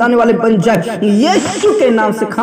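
A man praying aloud in Hindi, with a drawn-out hissing sibilant in the second half.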